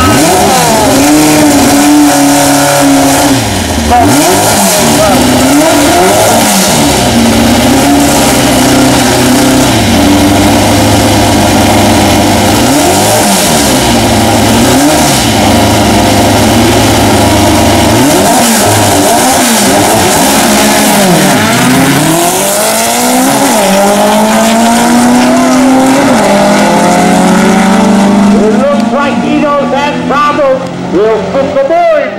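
Drag-racing VW Beetles' engines revving in repeated blips at the starting line, then launching: a long climbing engine note, a gear change a few seconds later and another climb, loud throughout.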